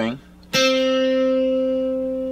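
A single note, C on the fifth fret of the G string, picked once on a Schecter C-1+ electric guitar about half a second in. It rings on, holding one steady pitch and slowly fading.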